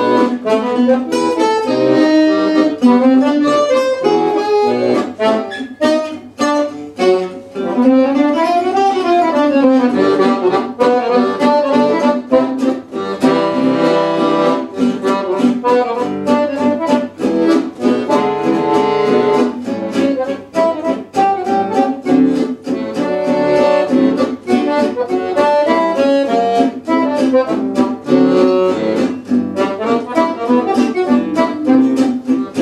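Instrumental duet of piano accordion and acoustic guitar: the accordion carries a quick melody over steadily strummed guitar chords. About eight seconds in, the accordion plays a run that rises and falls back.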